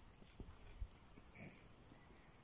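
Near silence with faint, irregular footsteps on stone paving and one low thump just under a second in.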